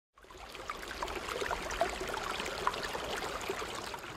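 River water running over rocks, a steady rippling rush that fades in over about the first second.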